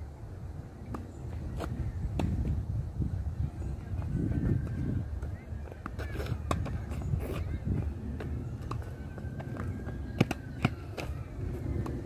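Tennis rally on a hard court: sharp pops of the ball off the rackets and bounces off the court surface, coming at irregular intervals of about a second, over a steady low rumble.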